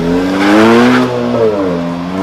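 Kia Soul GT's turbocharged four-cylinder pulling away through an aftermarket stainless-steel exhaust with a valve. The engine note rises in pitch and gets loudest about half a second to a second in, then falls and settles.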